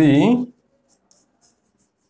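Chalk writing on a blackboard: a few faint, short scratches.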